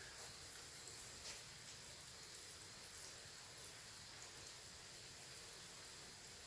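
Quiet room tone: a faint, steady hiss with no distinct sound in it.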